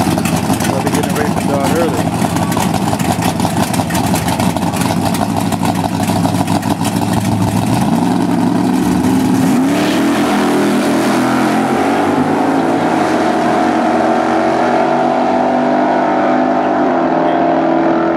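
Two drag-race cars, a Chevrolet S10 pickup and a Chevrolet Laguna, idle with a choppy, loud exhaust note at the starting line, then rev. About ten seconds in they launch and accelerate hard down the strip, with the engine pitch climbing and stepping at the gear changes.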